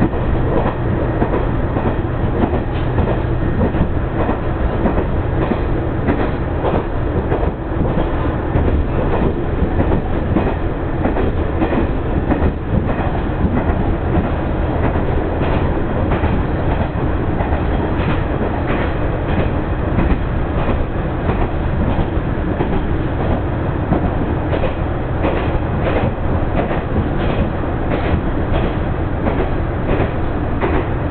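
Diesel railcar running along the line, heard from inside the car: a steady rumble of engine and wheels, with the clickety-clack of wheels over rail joints that comes thicker in the second half.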